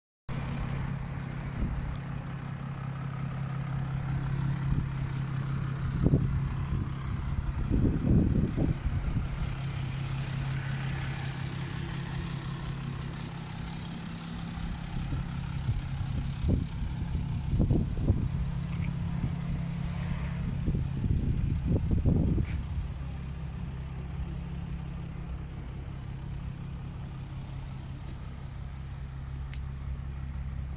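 Chrysler 300C engine idling with a steady, even low hum. Several brief thumps and rustles on the microphone come and go over it.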